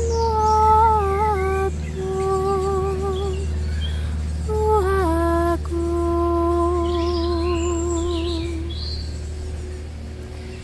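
A woman's voice humming a slow wordless melody: held notes with a slight waver, a quick downward slide about halfway through, then one long low note that fades out near the end. Birds chirp faintly behind it, over a steady low hum.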